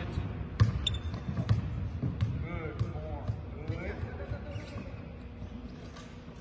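A basketball bouncing on a hardwood court in an empty arena, the bounces coming closer together and fading as the ball settles, with voices in the background.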